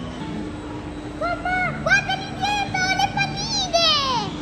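Electronic tune from a kiddie carousel ride: a steady held note, with a melody entering about a second in and ending in a falling slide.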